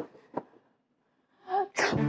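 Footsteps on a hard floor, two steps about half a second apart and fading, then near the end a loud, short burst of noise.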